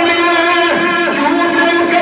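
A man's voice chanting melodically through a microphone, holding one long, steady note.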